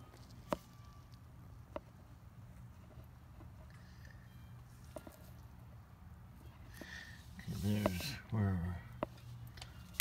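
A low steady hum with a few faint, scattered clicks of small handling noises, then a man's voice for about a second and a half near the end.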